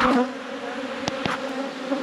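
Honeybees buzzing around an opened hive, a steady hum from many bees in flight. Two sharp clicks sound a little past a second in.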